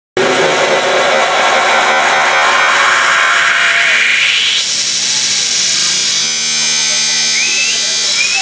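Loud electronic dance music over a club sound system, heavily distorted: a dense, noisy build with a sweep that rises over about four seconds, giving way to a held synth chord from about six seconds on, with a short gliding tone near the end.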